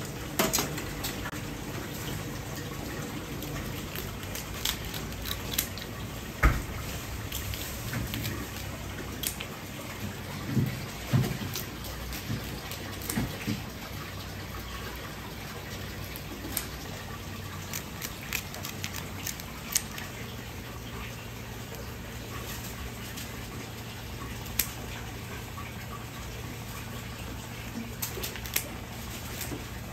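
Red king crab pieces sizzling on a hot wire grill, with scattered clicks and knocks from tongs and kitchen scissors working the shell and grill; the sharpest knock comes about six seconds in.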